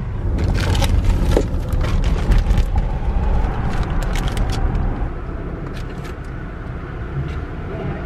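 Low rumble of a car's cabin while driving, with plastic zip-top bags crinkling as they are handled in the first few seconds.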